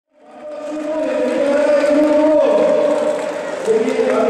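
Voices chanting in long held notes, fading in from silence over the first half second.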